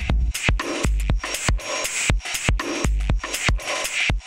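An electronic UK garage drum loop of kick, snare and hi-hats played through Guitar Rig's 'Heavy Compression' preset as a parallel channel. The hits come in a syncopated pattern, with a dense, crunchy, overly processed wash filling the gaps between them.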